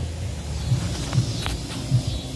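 Soft low thumps of footsteps on an inflated bounce house's air-filled vinyl floor, about two a second, over the steady low hum of the bounce house's inflation blower. Two short sharp clicks come a little over a second in.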